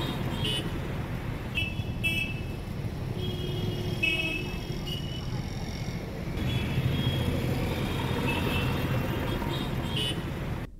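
Road traffic noise: a steady rumble of passing vehicles with short car and motorbike horn toots sounding again and again.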